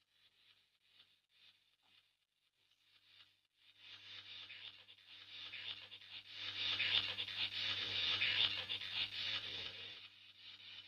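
Near silence for about three and a half seconds, then a scratchy rubbing, rustling noise that builds up and stays over a steady low electrical hum, easing off just before the end.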